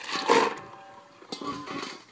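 A person letting out two harsh yells, a loud one at the start and a second, shorter one near the end.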